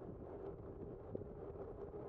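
Bicycle rolling along a paved path: a steady hum with light wind noise on the microphone and a few faint small clicks.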